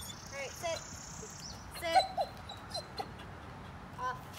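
German Shepherd puppy whining in short cries that bend up and down in pitch, with a louder, sharper yelp about two seconds in.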